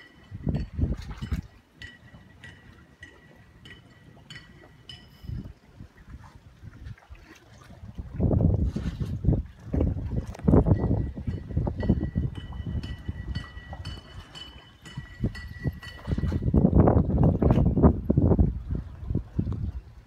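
Wind buffeting the phone's microphone in gusts, strongest in two spells, from about eight to thirteen seconds in and again around sixteen to eighteen seconds. A faint thin high tone comes and goes, with light clicks in the quieter stretches.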